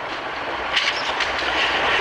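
Steady background noise of an old audiocassette recording: hiss with a low rumble and a faint steady whine running through it.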